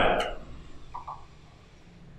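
A man's voice trails off, then a quiet room with two faint short sounds about a second in, from a small plastic drink bottle being opened and handled.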